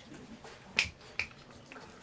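Two sharp finger snaps about half a second apart, the first louder.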